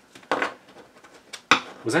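Tarot cards handled on a wooden tabletop: a short brushing sound, then a sharp tap about a second and a half in as a card is laid down.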